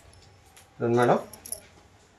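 Cotton garments being handled, with a few faint, brief rustles and ticks about one and a half seconds in, just after a single spoken word.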